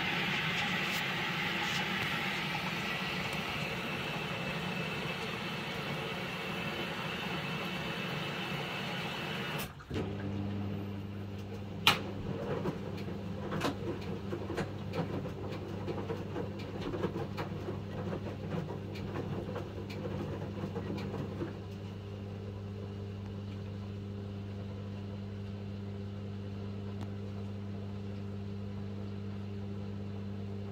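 Samsung WW75TA046TE front-loading washing machine drawing water in with a steady rush, which cuts off about ten seconds in. The drum motor then starts with a steady hum as the drum turns, with wet laundry sloshing and knocking irregularly and one sharp knock a couple of seconds later. The sloshing dies down a little past the middle, leaving the motor hum.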